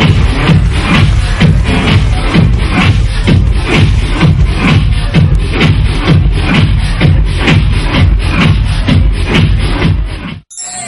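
Electronic dance music from a DJ set, loud, with a steady beat of about two strokes a second and heavy bass.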